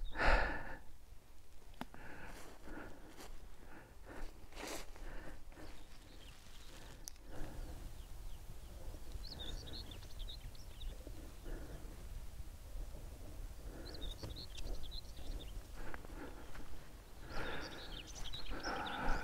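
Outdoor ambience on a windy dune path: irregular soft steps and brushing through grass in the first half, then a small bird twittering in two short bursts, over a steady low rumble.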